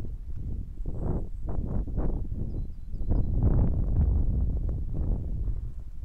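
Wind buffeting the microphone in irregular gusts, rising about a second in and loudest around the middle.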